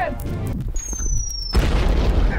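Sound-effect explosion: a thin falling whistle lasting under a second, then a sudden loud boom with a low rumble about one and a half seconds in.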